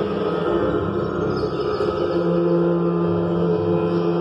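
Live electronic drone music: dense layered sustained tones held steady in the low and middle range, with a faint high sweep about a second and a half in.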